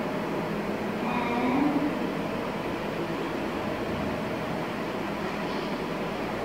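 Steady background hiss of room noise, with a faint voice about a second in.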